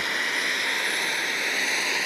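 Jet turbine of a radio-controlled Bell 430 scale helicopter running steadily in flight. It gives an even high whine of several steady tones over a constant rushing hiss.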